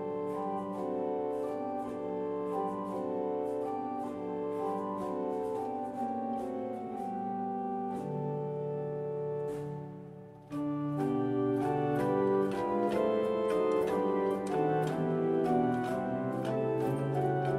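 The 1890 Bazzani pipe organ playing an offertoire in sustained chords; the music softens and thins about ten seconds in, then comes back suddenly louder and fuller.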